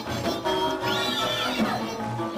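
Live Slovak folk band music for a dance: fiddle, cimbalom and double bass playing a lively tune over a pulsing bass line. About halfway through, a high note slides up, holds briefly and falls back.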